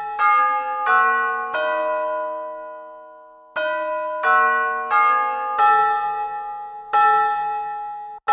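Instrumental intro of a J-pop anime song: bell-like chimes strike a series of chords, each ringing and fading. One chord about 1.5 s in is left to die away for two seconds before the struck chords start again.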